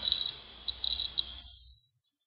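A high-pitched steady tone with short chirps at the same pitch over a low hiss, stopping abruptly about a second and a half in.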